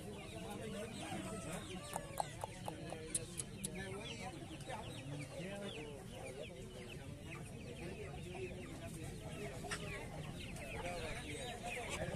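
A flock of young Aseel chickens clucking and peeping in a dense run of short falling calls, with a few sharp clicks about two to three seconds in.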